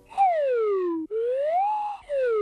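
A cartoon sound effect: a loud, whistle-like swooping tone that slides down in pitch for about a second, breaks off briefly, then slides back up.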